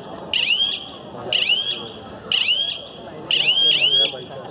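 A high-pitched chirping sound repeating about once a second, each chirp made of a few quick rising sweeps, over a murmur of crowd voices.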